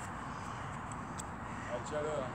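Low, steady background noise with no distinct event, and a faint voice briefly near the end.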